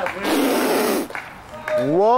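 A man's voice: a loud breathy blast of noise, then near the end a rising yell that swoops up in pitch and is held.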